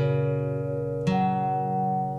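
Slowed-down guitar playing sparse chords: one is struck at the start and another about a second in, each left to ring over held low notes.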